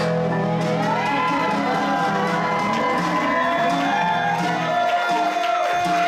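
A live band's closing chord, held and ringing on electric guitar, with the low notes dropping out about five seconds in. An audience cheers and whoops over it.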